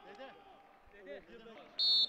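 Faint voices, then near the end a short, shrill blast of a referee's whistle.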